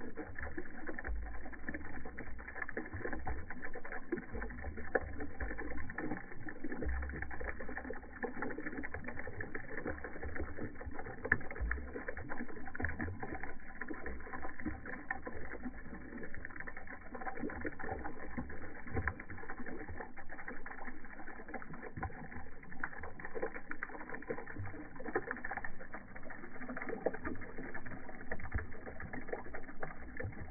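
A thin stream of liquid falling from above and splashing steadily into shallow water, with continuous small trickling splashes and popping bubbles.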